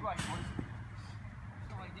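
Players' voices calling on an outdoor futsal pitch, faint near the start and again near the end, over a steady low hum, with a brief noisy burst just after the start.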